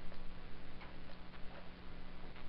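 Stylus tapping on a tablet screen during handwriting: a few faint, irregular ticks over a steady low hum.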